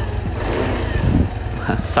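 Yamaha Aerox 155 scooter's single-cylinder engine with its stock exhaust, revved from idle, its pitch rising about half a second in.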